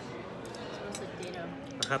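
Steady murmur of restaurant diners' chatter, with a few sharp clicks of a metal fork against a plate about two seconds in.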